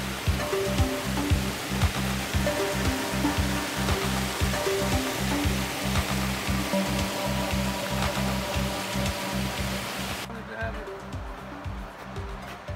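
Rushing water of a rocky creek's rapids, a steady hiss, under background music with a steady bass line. The water sound drops away about ten seconds in, leaving the music.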